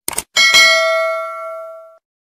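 Subscribe-button animation sound effects: two quick clicks, then a bell ding that rings on and fades away over about a second and a half.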